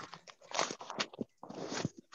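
Book pages being leafed through: irregular bursts of paper rustling and crackling, with a few sharp clicks.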